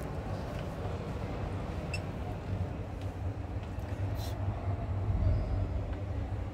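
Steady low rumble and murmur of a busy exhibition hall with distant voices, heard from inside a parked camper van, with a few light clicks and knocks and a short hiss about four seconds in.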